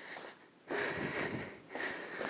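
A woman breathing hard during cardio stepping: one breath lasting about a second, starting under a second in, and a shorter one near the end.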